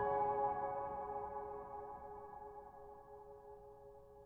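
Solo piano chord ringing on after its last notes were struck and slowly fading away, with no new notes played.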